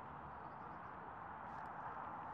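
Faint steady outdoor background noise, an even hiss with no distinct events.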